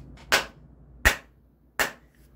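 Three sharp hand claps or slaps, evenly spaced about 0.7 s apart.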